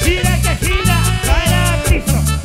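Live band playing upbeat Latin dance music, with a heavy bass line, melodic riffs that rise and fall, and cymbal hits about four times a second.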